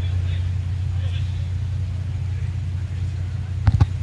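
Steady low rumble of background ambience under the match broadcast, with a couple of sharp knocks near the end.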